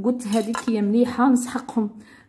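Dishes clinking against each other a few times as they are handled, under a woman talking.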